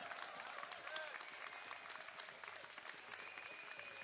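Faint, scattered applause from a small crowd, marking the end of a speech.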